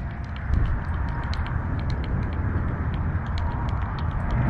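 Wind buffeting the microphone as a steady low rumble, with a string of light, irregular clicks and ticks over it.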